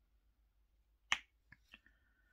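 Diamond painting pen tapping resin drills onto the tacky canvas: one sharp click about a second in, then three lighter taps in quick succession.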